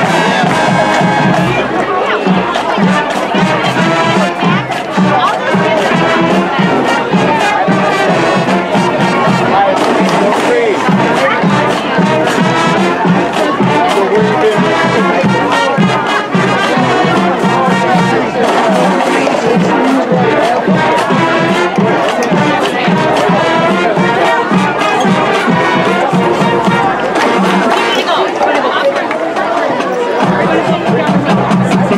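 Marching band playing: brass instruments carry the tune over the drum line's even beat. Crowd chatter is heard underneath.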